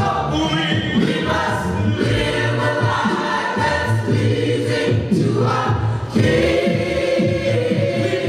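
Gospel choir singing a cappella, many voices together, with male lead singers on microphones, continuous throughout.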